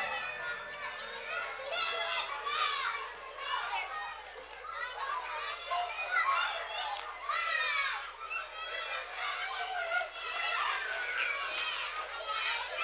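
Recorded children playing: many high young voices chattering and calling out over one another, fairly quiet.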